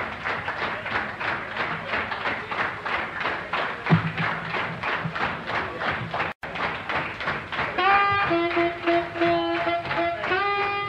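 Live small-group jazz: the band plays a busy, rhythmic passage, and there is a short total dropout at a track edit about six seconds in. Then a tenor saxophone enters with held melody notes over the rhythm section.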